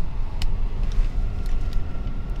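Steady low rumble of a car rolling slowly, heard from inside the cabin, with a few faint ticks.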